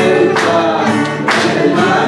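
A man and a woman singing a hymn together, accompanied by a strummed acoustic guitar.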